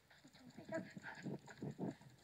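A child giggling quietly in a quick run of short breathy laughs.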